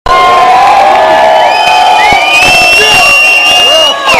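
Club audience cheering and shouting, with several long, high calls that rise and hold above the crowd.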